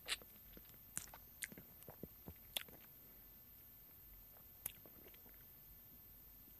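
Faint, irregular wet clicks and smacks of a person biting and chewing a raw lemon. There are half a dozen small sounds in the first three seconds and one more a little under five seconds in.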